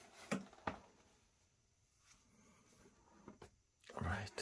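Near silence, broken by a few light knocks and taps as a cardboard LP box set is handled: two close together in the first second and another near the end.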